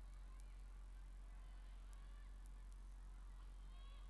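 Near silence: a steady low electrical hum, with faint high chirps scattered through it.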